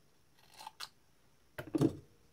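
Small bench-handling sounds from the wired breakout board and hand tools: two light clicks about half a second in, then a louder knock and clatter near the end.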